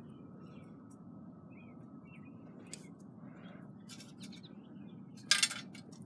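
Faint outdoor background with a few distant bird chirps. A short burst of rustling noise comes near the end.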